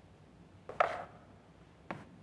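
A sharp wooden knock with a short ring about a second in, then a smaller click near the end, as a wooden chair takes a person sitting down.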